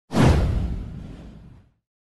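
A whoosh-and-hit transition sound effect for an animated logo reveal: it starts sharply and fades out over about a second and a half.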